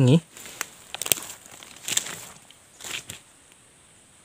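Dry leaf litter and twigs rustling and crackling, with sharp snaps about one, two and three seconds in.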